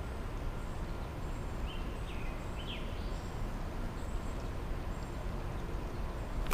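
Steady outdoor background noise, with a bird giving three short chirps about two seconds in.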